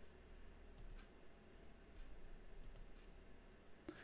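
Near silence with two pairs of faint, sharp clicks, one pair about a second in and another near three seconds, and a single click near the end.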